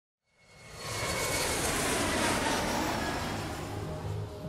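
Aircraft engine roar, a rushing noise with faint high whining tones, fading in from silence over about a second and then holding steady.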